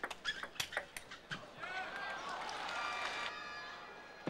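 Table tennis rally: quick sharp clicks of the ball striking bats and table for the first second and a half, then rubber-soled shoes squeaking on the court floor under a swell of crowd noise, with a held shout of voices near the end.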